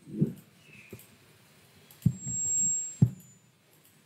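Dull, low thumps from someone moving and handling things at an altar, three of them about a second apart in the second half, with a thin high whine between the last two.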